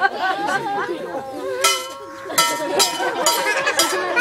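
Overlapping chatter of children and adults, with a run of about five short metallic clinks, each ringing briefly, about half a second apart in the second half.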